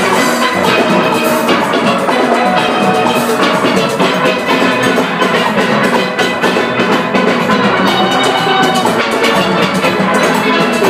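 A steel band of many steelpans playing together at full volume, a dense, fast run of struck ringing notes over a steady drum beat.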